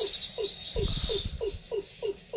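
A rapid series of short, downward-sliding animal calls, about four a second, with a faint steady high tone behind them. A brief low rumble, like wind on the microphone, comes about halfway through.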